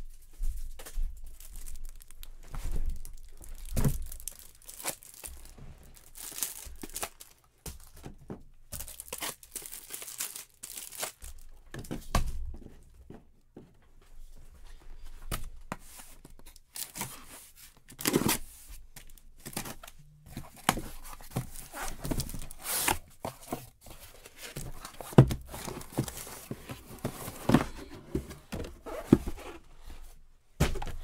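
A cardboard card case being torn open by hand: repeated irregular ripping of tape and cardboard with crinkling, and a few dull knocks as the boxes inside are handled and set down.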